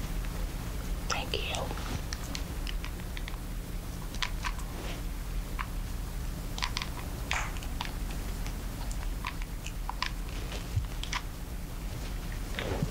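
Scattered small clicks and ticks of a hot glue gun being handled at close range while it misbehaves, over a steady low electrical hum.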